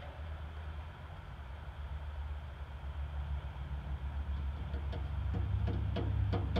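Ford 460 V8 in a 1940 Dodge truck idling steadily with a low rumble that grows a little louder over the second half.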